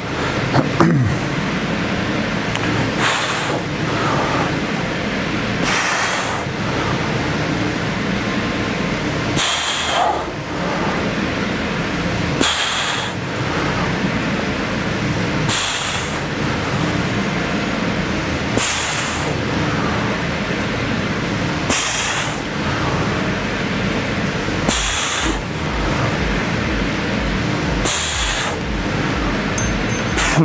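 A man breathing out sharply through his mouth on each repetition of a dumbbell stiff-leg deadlift: a short hissing exhale about every three seconds, ten in all, over a steady background noise.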